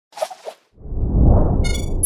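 Intro logo sting sound effect: a brief swish, then a loud low whoosh from about three-quarters of a second in, with a bright ringing chime over it near the end.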